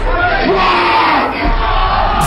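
Concert crowd cheering and yelling, many voices shouting at once.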